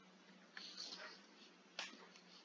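Near silence, with faint scratchy strokes of a stylus writing on a tablet screen and one short click near the end.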